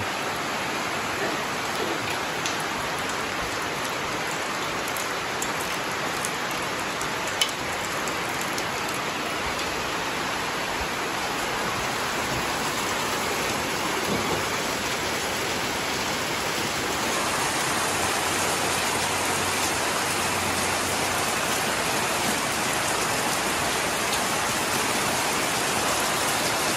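Steady rain falling on corrugated metal roofs, a little louder in the second half, with a single sharp knock about seven seconds in.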